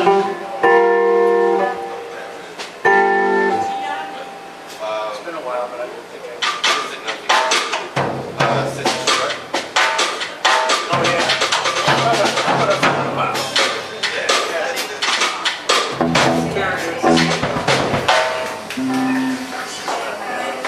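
A live band on electric guitar, bass and drum kit. A few held guitar chords ring out first; about six seconds in, the drums and bass come in and the band plays together for the rest of the stretch.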